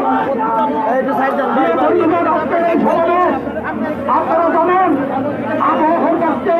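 Speech: people talking without pause, with other voices chattering around.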